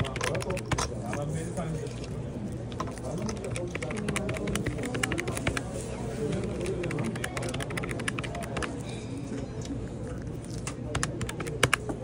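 Quick, light clicks of plastic keys on a desk calculator being tapped to work out a total, coming in runs with short pauses.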